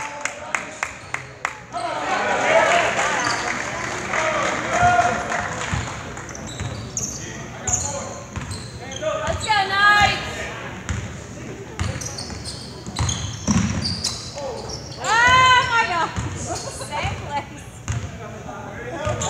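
Basketball dribbled on a hardwood gym floor, a quick run of bounces at the start and scattered bounces later, with players and spectators shouting, loudest about halfway through and again near the end, echoing in a large gym.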